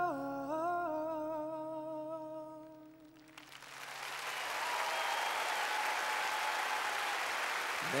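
A man's last held sung note over piano, wavering slightly, fades out about three seconds in. Then audience applause starts and swells to a steady level.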